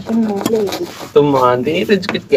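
A person's voice, drawn out and without clear words, rising and falling in pitch, with a longer rising call about a second in.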